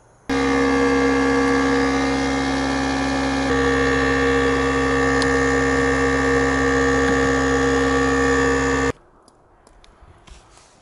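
Small portable electric air compressor running: its motor starts abruptly, runs steadily with a slight step in tone about three seconds in, and cuts off suddenly after about nine seconds.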